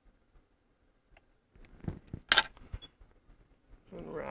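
Small scissors and hands working at a fly-tying vise. It is near quiet at first, then a cluster of clicks and rustles begins about a second and a half in, the sharpest a crisp click a little after two seconds.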